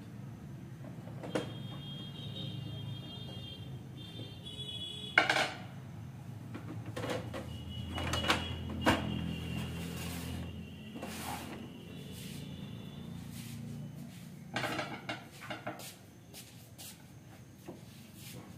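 Plastic clunks and clicks from a Canon G3020 ink tank printer's scanner unit being lowered shut and its casing handled during reassembly. The knocks are scattered, with the loudest clunk about five seconds in and further clusters of clicks later.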